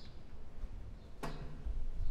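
Outdoor ambience: a low steady rumble, a faint short bird chirp at the very start, and one sharp click a little past the middle.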